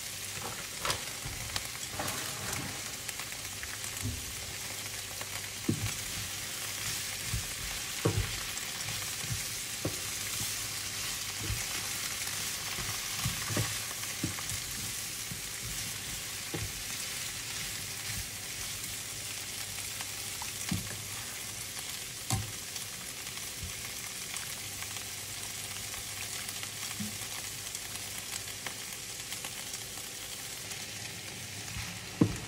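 Cabbage and snow peas sizzling as they stir-fry in a nonstick pan, a steady hiss broken by scattered clicks and scrapes of metal tongs tossing the vegetables against the pan.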